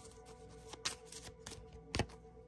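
Oracle cards being shuffled and handled by hand: a few short, scattered card flicks, the sharpest near the end.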